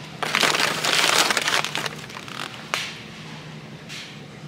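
Plastic bag of dried mango crinkling as it is picked up and handled: a dense crackle for about a second and a half, then a few short crinkles.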